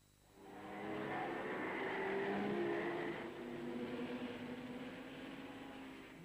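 Racing car engines running at speed, fading in about half a second in and dying away near the end.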